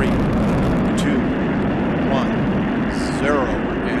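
Space Shuttle Atlantis's three liquid-fuel main engines firing at ignition on the launch pad: a dense, steady roar with a single sharp crack about a second in.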